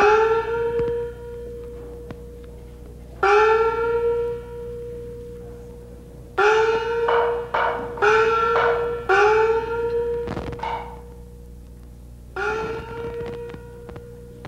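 Chinese opera small gong (xiaoluo) struck six times at uneven intervals, each stroke bending up in pitch just after the hit and then ringing on. A couple of sharper percussion clicks fall between the middle strokes.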